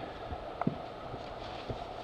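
A couple of light knocks about a second apart as the engine's cylinder block and towel are handled on the bench, over a steady background hum.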